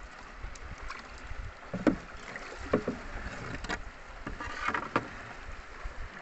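A single wooden paddle stroking through river water beside a small wooden boat. There are short splashes and knocks about once a second from about two seconds in, over a steady rush of water and wind.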